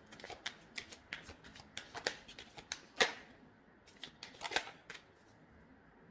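A deck of tarot cards being shuffled by hand: a run of irregular quick card clicks, the loudest about three seconds in, stopping about five seconds in.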